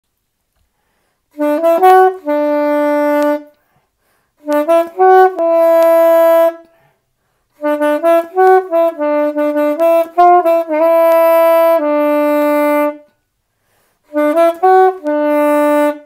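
Solo saxophone playing a melody unaccompanied, in four phrases separated by short silences, each a run of quick notes that ends on a long held note.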